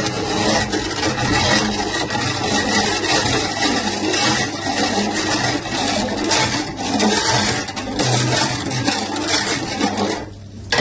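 Red syrup pouring in a stream into a steel pot of sharbat while the mixture is stirred, giving a steady splashing and scraping of liquid against the pot.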